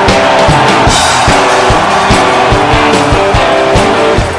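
Rock band playing live: electric guitars over bass and a steady drum beat, an instrumental stretch with no singing.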